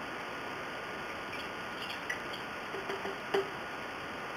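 Steady background hiss with a few faint light ticks and one sharper small click a little after three seconds in, as a plastic graduated cylinder is handled and set down on a cutting board.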